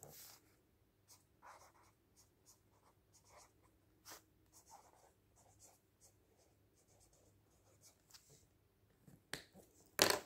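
Faint scratching of a pen writing on paper in short, scattered strokes, with a louder paper rustle near the end.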